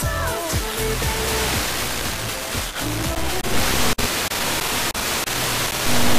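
FM radio static from an Airspy software-defined radio being tuned across the 66–74 MHz OIRT band. Weak, noisy snatches of music from distant stations carried by Sporadic E come through the hiss, with brief dropouts about four and five seconds in.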